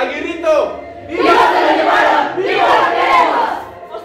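A single voice calls out briefly, then a group of voices shouts two long phrases together in unison: a shouted call-and-response chant.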